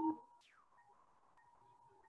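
The tail of a voice at the very start, then a faint, thin tone that slides down in pitch about half a second in and holds steady at one pitch.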